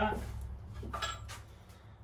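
A few light knocks and clinks, near the start and about a second in, from a wooden test block fastened with a metal tabletop Z-clip being handled and lifted off a notched trial board.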